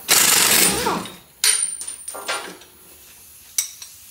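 Cordless impact wrench with a 21 mm socket hammering the lower shock absorber bolt loose: a loud run of about a second, then a second, shorter run with a thin high whine about a second and a half in. A sharp click comes near the end.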